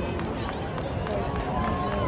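Stadium crowd chatter: many voices talking at once, with no music playing.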